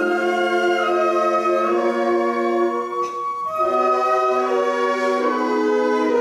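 School concert band playing slow, held wind chords. The sound thins out briefly about halfway through, then a new chord comes in.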